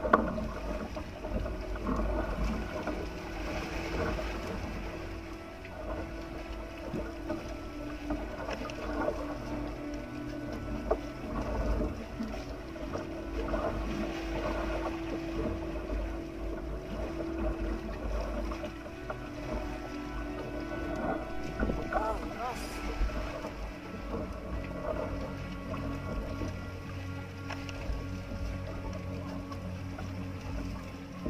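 Outrigger boat's engine running steadily, with wind rumbling on the microphone and scattered small knocks.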